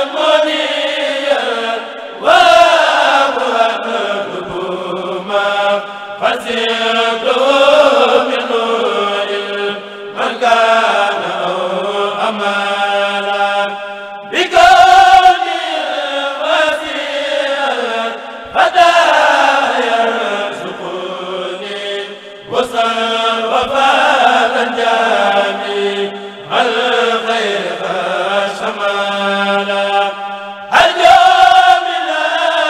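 A Mouride kourel, a group of men, chanting a religious khassida unaccompanied, in sung phrases of about four seconds, each starting strongly and trailing off.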